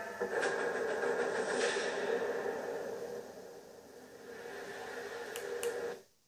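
Soundtrack of a TV programme heard from the television's speakers in a small room: a steady, droning music bed that fades down about two-thirds of the way through, swells back, and cuts off suddenly at the end.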